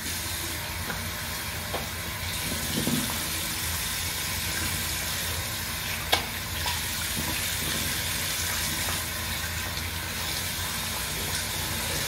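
Bathroom tap running steadily into the sink after a shave, with a few faint knocks about two, three and six seconds in.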